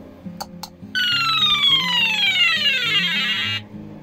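Arduino game's buzzer sounding a long electronic tone that slides steadily down in pitch for about two and a half seconds and then cuts off, after two short clicks about half a second in. Guitar background music plays underneath.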